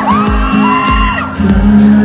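Live pop band music: a steady kick-drum beat under acoustic guitar and held keyboard chords. High-pitched whoops from the crowd ride over it in the first half and die away a little past the middle.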